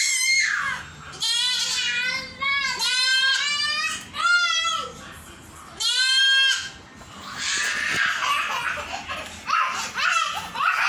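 Goat bleating about five times in the first seven seconds: high calls with a quavering pitch, each about half a second to a second long.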